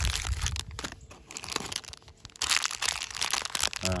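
Plastic wrappers of MRE snack packs crinkling as they are handled: a wrapped pack of rusks, then a plastic pouch of almonds. The crinkling is dense in the first second, quieter for a spell, then comes back louder for the last second and a half.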